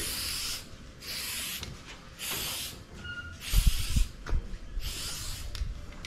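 Aerosol can of Flex Seal liquid rubber spraying in about five short bursts of hiss, the can nearly empty. A brief low rumble of wind on the microphone comes about midway.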